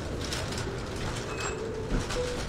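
Steamed milk being poured from a metal pitcher into a ceramic cup for latte art, over a steady low café hum. A couple of brief high chirp-like tones come about one and a half seconds in.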